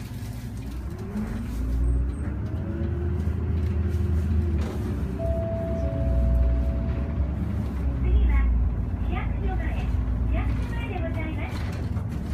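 City bus engine heard from inside the cabin, a low rumble under load. Its pitch climbs and drops back several times as the automatic gearbox shifts up.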